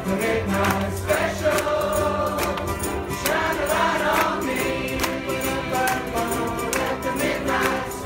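A large ensemble of ukuleles strummed in a steady rhythm while many voices sing together.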